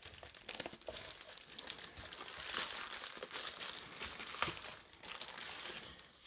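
Plastic courier mailing bag crinkling and rustling as hands pull letters out of it, a continuous run of small crackles with one sharper crackle about four and a half seconds in.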